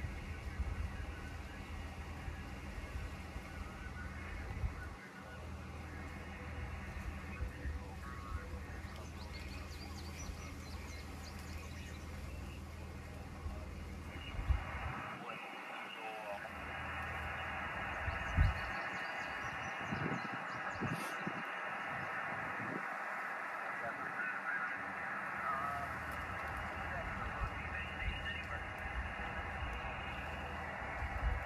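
Shortwave receiver hiss from a Xiegu X6100 transceiver's speaker, cut off above about 3 kHz, with faint garbled voices. The hiss grows louder about halfway through. There is a low rumble of wind on the microphone in the first half and a few handling knocks.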